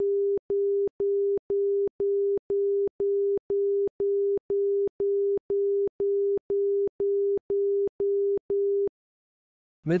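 ILS outer marker beacon identification tone: a 400 Hz tone keyed in continuous dashes, about two a second, as heard from a marker beacon receiver. It stops about a second before the end.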